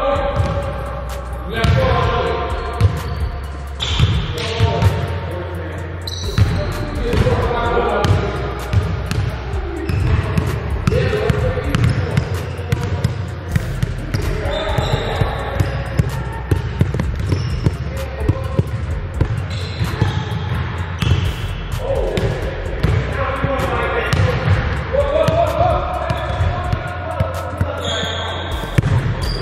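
Basketballs bouncing and being dribbled on an indoor gym's hardwood floor, a run of short repeated thuds, over voices and a steady low hum.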